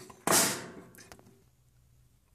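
A plastic fashion doll knocked over by a hit from a toy purse: a sudden rustling hit that fades over about a second, followed by a few light clicks.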